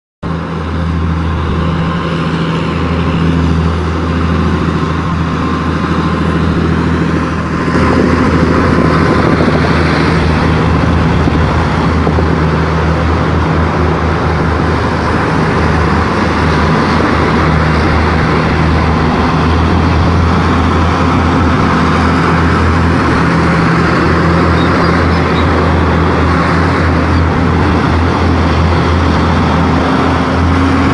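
Engines of a passing T-64BM tank convoy, two-stroke diesels, running in a steady low drone that gets a little louder about eight seconds in.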